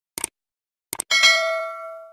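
Subscribe-button sound effects: a short click, then a quick double click about a second in, followed at once by a bell ding that rings out and fades away.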